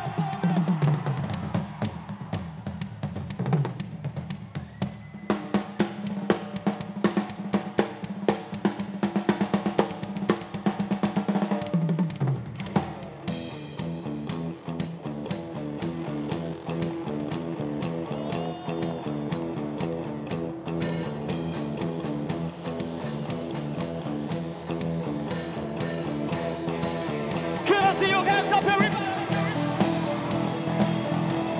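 Live band starting its set: a drum kit plays loose hits and rolls over a low sustained tone, then about halfway through a steady rhythmic groove comes in with the bass guitar and other instruments.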